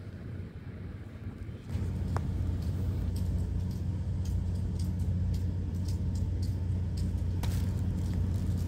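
A steady low mechanical rumble sets in about two seconds in and holds, with faint scattered clicks over it.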